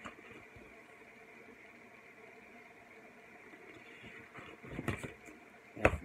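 Quiet room tone, then a few short rustles of paper sheets about four to five seconds in as a sticker pad is handled.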